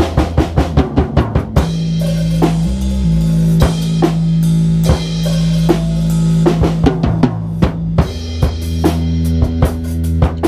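Jazz improvisation on drum kit and keyboard. Busy drum strokes on bass drum, snare and rims play over held low keyboard notes that change pitch a couple of times.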